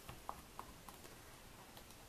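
Very quiet: a few faint light clicks in the first second as fingers press down on the closed plastic door of a MISTI stamp-positioning tool.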